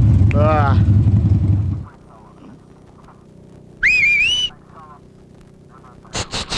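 A man cries out 'Ah! ah!' over a loud low rumble that cuts off about two seconds in. Near the middle there is one short whistle that rises in pitch and then wavers.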